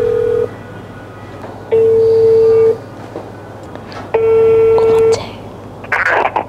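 Telephone ringback tone through a smartphone's loudspeaker while an outgoing call rings, not yet answered. A steady single-pitched beep about a second long sounds three times, with gaps of about a second and a half.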